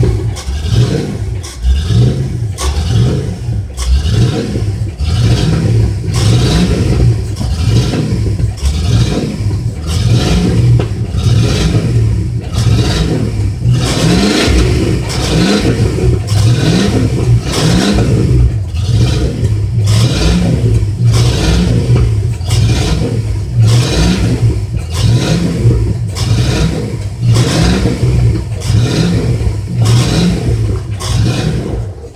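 A vehicle engine running hard and revving, with a rhythmic pulsing just under twice a second and several short rises in pitch around the middle.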